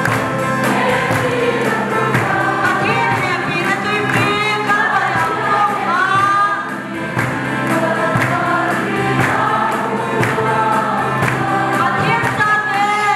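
Women's choir singing a gospel song over a steady beat.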